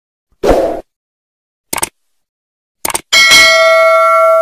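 Subscribe-button animation sound effects: a short pop, two quick double clicks about a second apart, then a bell ding that keeps ringing for over a second.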